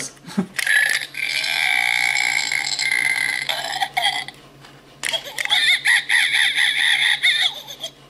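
Ugglys Pet Shop Gross Home toy's electronic sound unit playing recorded gross-out sound effects through its small speaker, set off by the monkey cage room piece. Two separate clips, the first from about half a second in lasting about three and a half seconds, the second starting about five seconds in.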